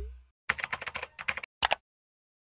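Computer keyboard typing sound effect: a quick run of key clicks, a short pause, then a last pair of clicks. It begins just after the fading tail of a low boom.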